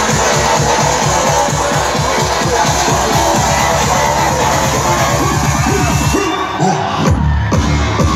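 Loud DJ dance music over a live sound system, with a steady thumping beat and crowd noise underneath. About six seconds in the treble cuts out for a moment, then a heavier bass line comes back in.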